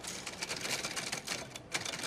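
Old manual typewriter being typed on: a rapid, continuous clatter of key strikes.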